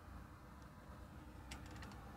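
Near silence: faint low room hum, with a few light clicks about one and a half seconds in.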